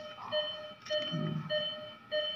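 Electronic beeping from operating-room equipment: one steady pitched beep repeating at an even pace, a little under two beeps a second. A brief low murmur about a second in.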